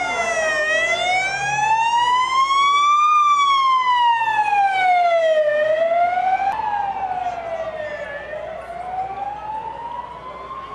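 An electronic siren wailing, its pitch rising and falling slowly about once every five seconds, loud at first and growing fainter in the second half.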